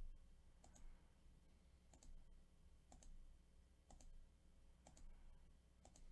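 Faint computer mouse button clicks, single sharp clicks about once a second, from repeatedly clicking a web page's randomize button.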